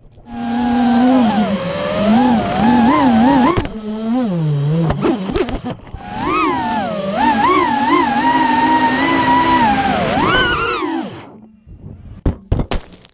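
FPV racing quadcopter's brushless motors and propellers whining, picked up by the onboard camera's microphone, the pitch rising and falling with throttle. The whine drops away about four seconds in with a few sharp knocks, climbs back about two seconds later and cuts off near the end.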